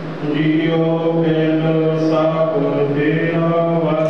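Sikh devotional chanting: a voice intones Gurbani in long, held notes that shift slowly in pitch, over a steady low drone.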